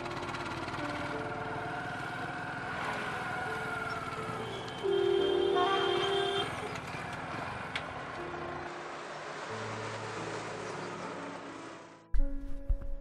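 Background music over road and traffic noise, with a vehicle horn honking once for about a second and a half near the middle.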